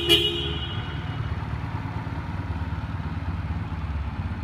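Honda CM125 Custom's electric horn gives a short beep at the very start. The bike's air-cooled parallel-twin engine idles steadily underneath.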